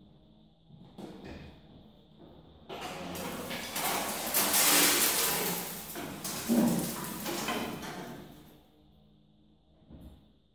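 Stripped Austin Healey 3000 body shell turning over on a wooden rotisserie: about five seconds of rattling and scraping that starts about three seconds in and swells to a peak, with a sharp knock a little later.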